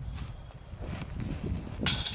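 Low outdoor background noise, then near the end a disc golf disc strikes the chains of a metal basket with a sudden metallic jingle that keeps ringing: a putt going in.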